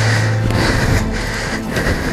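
Yamaha WR250R's single-cylinder engine running at low revs as the bike is worked through a deep, narrow rut; its steady note breaks up about half a second in.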